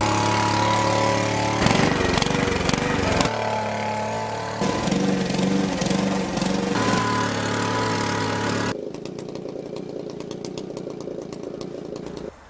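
Petrol-engined garden machines running, in a series of short takes that cut abruptly from one to the next every one to four seconds. A push lawn mower's petrol engine runs through the middle stretch. A quieter machine with a fast, regular rattle takes over for the last few seconds.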